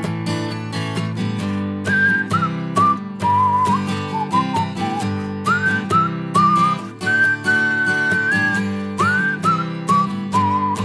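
A whistled melody played over a strummed acoustic guitar and drums in an instrumental break of a live folk song. The whistle scoops up into its notes and holds one long high note near the end.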